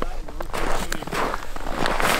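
Boots scuffing and crunching on snow-covered lake ice in a run of uneven shuffling steps.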